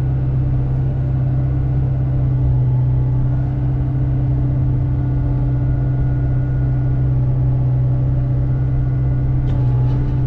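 Hyundai mini excavator's diesel engine running steadily, heard from the operator's cab as a loud, even drone.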